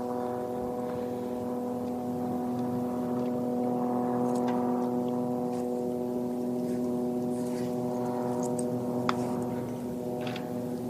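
A steady mechanical drone holding several fixed pitches, with one sharp click about nine seconds in.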